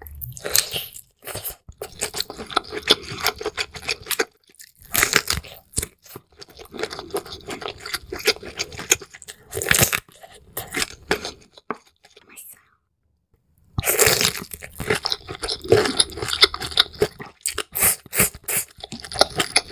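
Close-miked eating sounds: biting and chewing a cooked, shell-on prawn, with crunching and wet mouth noises in irregular bursts. There is a brief near-silent pause a little after the middle, then the eating resumes.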